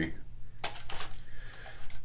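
Several quick hard-plastic clicks and knocks as the flight battery is handled against the body of a DJI Phantom 3 Standard drone, fitted into its battery bay.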